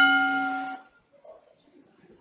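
Electronic chime of a parliament's voting system, signalling that an electronic vote has opened: a single bell-like tone that rings and fades out about a second in. After it comes faint chamber room noise.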